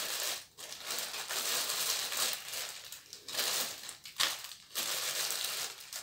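Crinkly packaging wrap being rustled and pulled off by hand as a ring light is unwrapped, going on in stretches with a few brief pauses.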